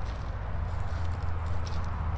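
Hands rustling and scratching through shredded paper and damp compost, heard as faint scattered ticks over a steady low rumble.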